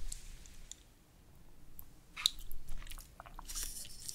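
Close-miked chewing of grilled webfoot octopus (jjukkumi): scattered mouth clicks, quiet around the first second and coming more often from about two seconds in.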